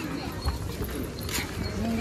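People talking nearby, with low thuds and a couple of sharp clicks mixed in.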